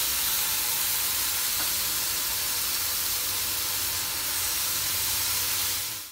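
Raw bacon strips sizzling as they are laid on a hot flat pan: a steady frying hiss.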